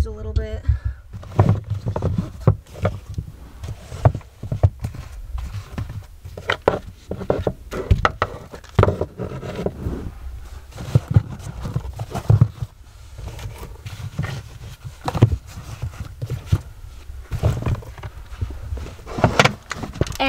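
Shoes being picked up and set down on a closet shelf: a run of irregular knocks, thuds and rustles, with handling of the camera.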